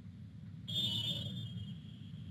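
A single short high-pitched electronic ping, a computer notification chime, sounds about two-thirds of a second in and fades away over about a second, over a faint low hum.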